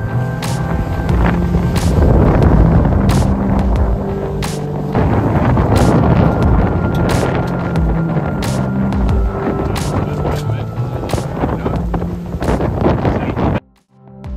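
Background music with a regular beat, laid over wind and water noise from a sailboat under way in a strong breeze. The sound cuts out abruptly just before the end.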